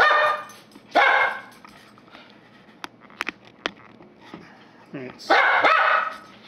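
A pet dog barking in short bursts: once right at the start, again about a second in, and again near the end. A few sharp clicks fall in the quieter stretch between.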